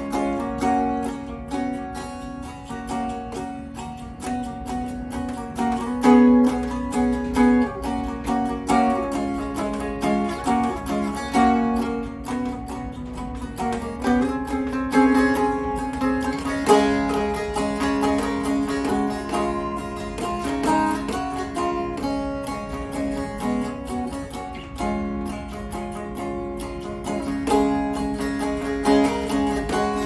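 Homemade guitar with a Beekman 1802 gift-tin body and a diatonic, dulcimer-style neck tuned to open D, playing a short song: plucked melody notes over a steady low drone.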